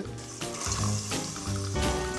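Background music with steady held notes, over the sizzle of chopped celery, carrot and onion frying in olive oil in a pot.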